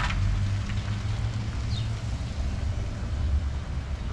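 Outdoor street ambience: a steady low rumble of traffic with a single short, falling bird chirp a little before the middle.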